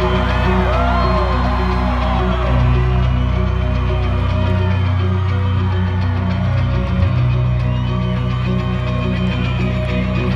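Live rock band music heard from within an arena crowd, with sustained low bass notes under the band. A few crowd whoops rise over it in the first two seconds.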